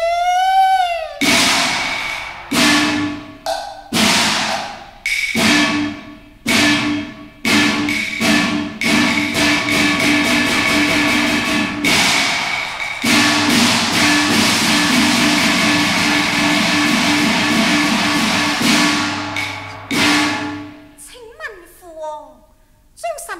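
Cantonese opera percussion of gongs and cymbals. A sung line trails off just after the start, then the ringing strikes speed up into a sustained loud roll, pause briefly, and roll on until a final strike about two seconds before the end. A voice comes back at the very end.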